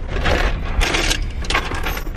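Rustling and clicking handling noises in short bursts, including a few sharp clicks near the end, over the steady low rumble of a car on the move.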